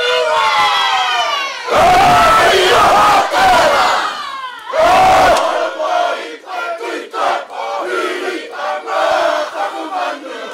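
Many voices calling out together in ceremonial Māori calling and wailing, with long falling calls. It swells loudest about two seconds in and again near the middle.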